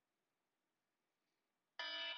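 Near silence, then near the end an electronic workout timer starts its alarm with a long, steady beep, the first of a series, signalling the end of the plank hold.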